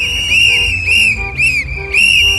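A shrill whistle holding a high tone, warbling in quick rise-and-fall blips about three times a second, over music with a low beat.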